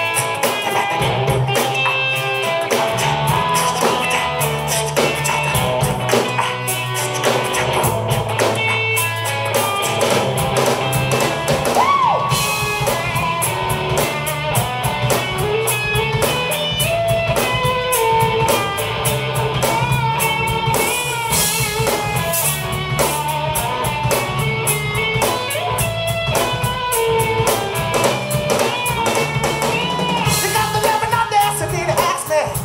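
Live band playing a song: electric guitar lines over bass guitar and a drum kit keeping a steady beat.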